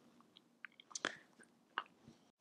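Faint handling sounds of a go-kart brake master cylinder being reassembled by gloved hands: a few small ticks as the greased piston and seal assembly is worked into the metal cylinder body, the clearest about a second in.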